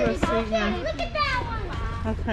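Young children talking and vocalizing in high voices, the pitch sliding up and down.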